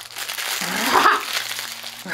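Crinkling of a plastic toy wrapper being handled, followed about half a second in by a short pitched vocal sound lasting about a second.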